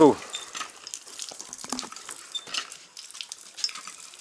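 Faint dripping and light splashing of water, with scattered small clicks, as a small cup of well water and a water tester are handled.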